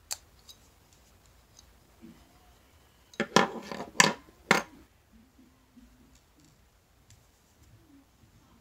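Cardboard 2x2 coin holders being handled: a faint click at the start, then a quick run of about five sharp clicks and snaps a little past three seconds in, over quiet room tone.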